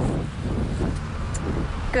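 Steady low rumble and hiss of outdoor background noise on a live field microphone.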